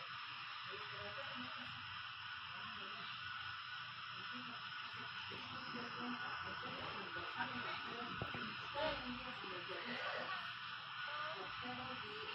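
A muffled jumble of many video soundtracks playing over one another: indistinct, fragmentary voices and snatches of sound under a steady hiss.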